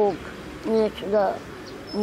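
A man's voice speaking a few words, with faint short bird chirps behind it.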